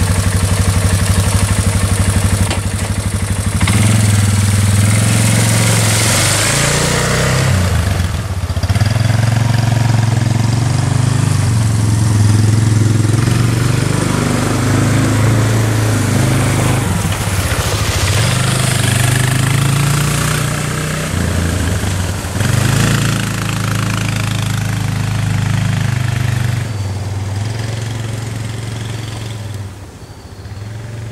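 Four-wheeler (ATV) engine running as it is ridden, its pitch rising and dropping with the throttle and dipping several times, growing fainter near the end.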